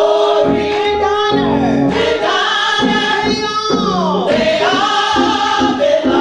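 Church choir singing a gospel song, the voices twice sliding down in pitch in a run.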